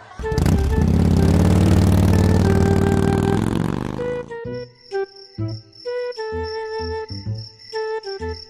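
Motor scooter engine sound effect revving and pulling away, its pitch falling over about four seconds before it cuts off. It is followed by sparse music notes over steady cricket chirping.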